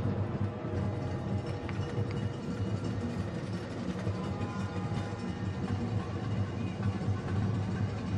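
Football stadium ambience with low music playing steadily in the background, without commentary.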